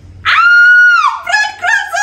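A young woman's loud, high-pitched shriek, held for nearly a second before dropping, followed by a string of shorter, wavering whiny cries in a lower voice.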